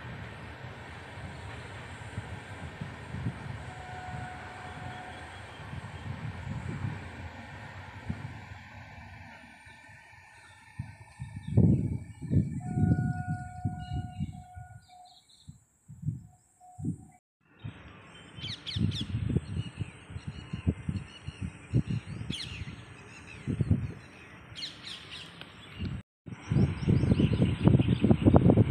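A distant passenger train's steady rumble as it runs past, then birds chirping over irregular low buffeting of wind on the microphone.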